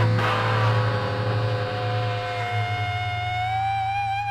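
Closing bars of a rock song: after a final hit, sustained instrumental notes ring out over a low held drone and slowly fade, the main note gliding slightly upward near the end.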